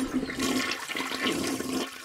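A toilet flushing: rushing water for about two seconds, ending just before the next words.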